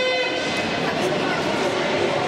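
A short horn blast, several even tones together, that fades within about half a second, over the steady chatter and din of a crowd in an ice rink.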